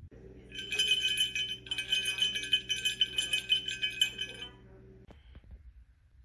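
Smashed crotal bell shaken by hand, jingling and rattling with a ringing high tone for about four seconds, over a steady low hum.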